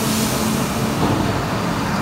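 Diesel engine of a concrete pump truck running steadily with a constant low hum, a hiss fading away in the first half second.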